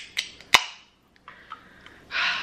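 Aluminium Red Bull can being opened by its pull tab: a couple of small clicks as the tab is lifted, then a sharp pop about half a second in, followed by a faint hiss.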